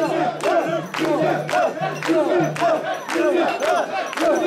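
Crowd of mikoshi bearers chanting together in a steady rhythm as they carry a portable shrine, about two calls a second, with sharp clicks falling on the beat.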